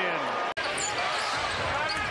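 Basketball dribbled on a hardwood court, with short sneaker squeaks over arena background noise. The sound drops out abruptly about half a second in, at an edit, and picks up again with the new play.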